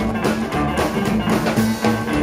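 Live rockabilly band playing an instrumental bar between vocal lines: upright bass and drum kit keeping a steady beat under acoustic and electric guitar.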